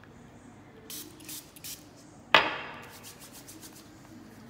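A few short hisses from a small spray bottle of hand sanitiser, then about halfway through a sharp knock as the bottle is set down on the stone countertop, followed by a run of light clicks.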